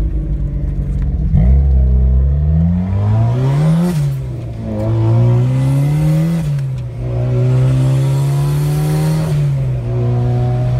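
Turbocharged Mazda Miata's four-cylinder engine heard from inside the cabin, accelerating hard through the gears. Engine pitch climbs, drops sharply at an upshift about four seconds in, climbs and drops again near seven seconds, then holds steady before easing off near the end.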